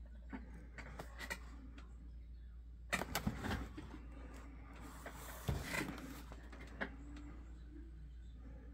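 Handling of a shrink-wrapped cardboard box held in the hand: faint clicks and rubbing, then crinkly rustles of the plastic wrap as the box is turned, loudest about three seconds in and again about five and a half seconds in, over a steady low hum.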